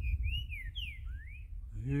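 Green-winged saltator (trinca-ferro) singing a phrase of loud, clear whistled notes that slide up and down, ending about a second and a half in.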